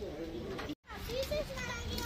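Background voices of people milling around, with a child's high voice in the mix. The audio cuts out for an instant about three quarters of a second in.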